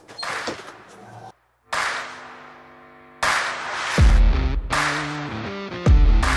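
A walk-in cool room's metal door latch clunking as its lever handle is pulled and the door swings open. After a brief cut, background music takes over: held electronic chords, joined about four seconds in by heavy bass beats.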